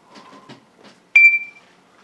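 A short, high electronic beep from a smartphone, about a second in, cutting off after under half a second. Before it come a few light handling clicks as the phone is touched.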